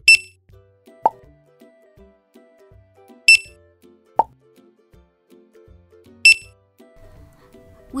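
Three short, high-pitched checkout scanner beeps about three seconds apart as items are rung up, the first two each followed about a second later by a short pop, over soft background music.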